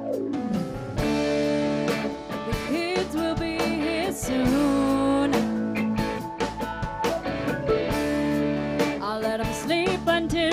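A live rock band playing a song, with drums, bass, guitar and keyboards, and a voice singing over it.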